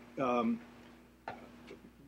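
A short hesitation sound from a man, then a pause broken by a sharp click a little over a second in and a fainter tick shortly after, over a faint steady hum.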